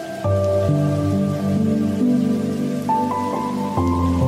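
Slow, soft instrumental music of held notes, with a low bass note coming in just after the start and again near the end, laid over the steady hiss of falling rain.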